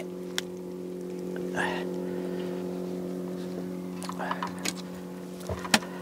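A boat motor running steadily, a constant hum of several pitches. A few light clicks and knocks come through it as the landed fish is handled.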